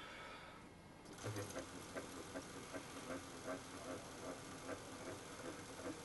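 Milling machine spindle turning slowly in reverse to back an M5 tap out of a freshly tapped hole in a toothed pulley. It is faint, with a regular light ticking about three times a second that starts about a second in.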